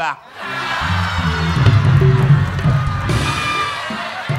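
Studio audience laughing and cheering with music playing, swelling about half a second in and easing off toward the end: the crowd's response to a comedy punchline.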